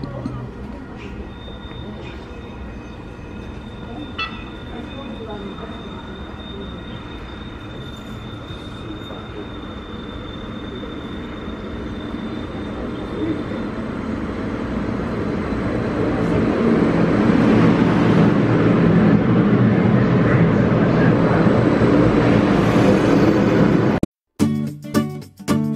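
CTrain light-rail train pulling into the platform, growing steadily louder from about halfway through and running loud near the end. A thin, steady high tone sounds over the first half.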